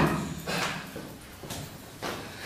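Faint scuffling and rustling of bodies and feet on a stage floor during a staged struggle, with a couple of small bumps.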